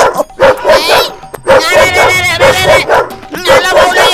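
A dog barking repeatedly over background music.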